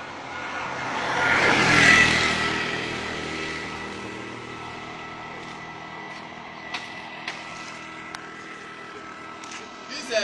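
A motor vehicle passes close by: its engine and road noise build to a loud peak about two seconds in, then fade away over the next few seconds. A few small clicks follow.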